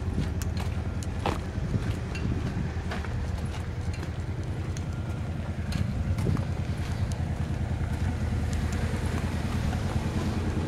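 A steady low engine hum, like a vehicle idling, running throughout, with scattered footstep and handling clicks on top.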